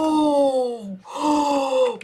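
A woman's long, drawn-out 'ooh' of excited amazement, voiced twice, each about a second long and sliding down in pitch.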